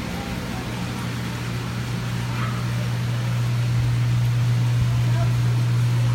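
Steady low electrical hum of the aquarium pumps and filtration running in a fish store, growing slightly louder, with faint voices in the background.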